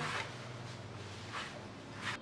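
Faint, soft rustling of hands crumbling and spreading a damp flour-and-sugar streusel crumb (granza) across a baking sheet, with a slightly louder rustle about one and a half seconds in, over a low steady hum.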